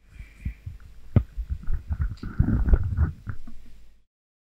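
Microphone handling noise: irregular low thumps and rubbing rumble with a sharp knock a little over a second in, busiest in the second half.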